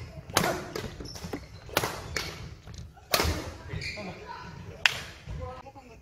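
Badminton rackets striking a shuttlecock in a fast rally: four sharp string hits about a second and a half apart, each echoing briefly in a large hall.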